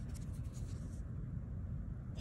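Faint scratchy rubbing of fingers turning a small dug-up metal button over close to the microphone, mostly in the first second, over a low steady rumble.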